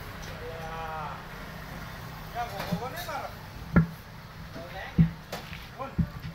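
Two sharp metallic knocks about a second apart in the second half, as a steel tyre lever is worked against the steel rim to pry a truck tyre's bead off.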